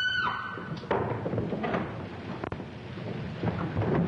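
A woman's high-pitched scream, held for about a second, then the noise of a scuffle with a sharp knock about two and a half seconds in.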